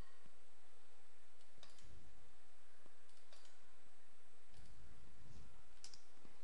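A few faint, scattered clicks from a computer mouse and keyboard as a command is selected, pasted and entered. They sit over a steady background hiss.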